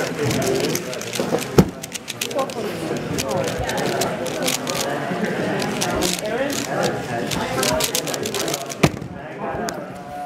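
Rapid, irregular clicking of a Moyu Aolong V2 3x3 speedcube being turned at speed during a solve, over a murmur of voices. One sharp knock stands out near the end.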